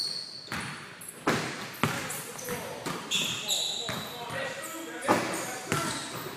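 Basketballs bouncing on a hardwood gym floor: several sharp, echoing bounces, the loudest a little over a second in and about five seconds in.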